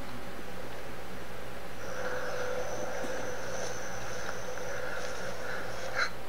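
Summer woodland ambience: a steady buzz of insects, with a higher, thin insect drone coming in about two seconds in and holding for a few seconds.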